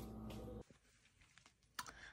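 A steady low hum that stops abruptly about a third of the way in, then near silence with a few faint clicks near the end.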